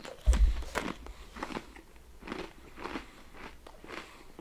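A crisp fortune cookie being bitten and chewed, with a low thump about a quarter-second in, then a run of irregular crunches.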